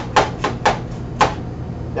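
Kitchen knife chopping a peeled carrot on a cutting board: five sharp knocks, four in quick succession and a fifth after a short pause, over a steady low hum.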